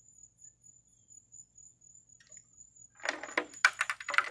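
Handling noise: a short burst of clattering and metallic jangling about three seconds in, after a quiet stretch, as music gear is moved about.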